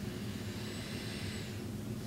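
Quiet room tone: a steady low hum, with a faint rushing hiss that swells and fades over about a second in the middle.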